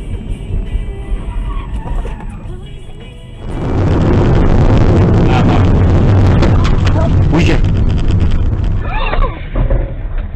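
Dashcam audio of a highway collision: about three and a half seconds in, the sound turns suddenly loud, and several seconds of heavy crash noise follow, with many sharp knocks as debris strikes the car.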